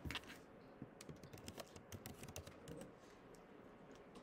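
Near silence: room tone with faint, scattered clicks.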